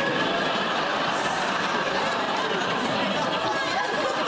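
Sitcom studio audience laughing. The laughter starts suddenly and holds steady.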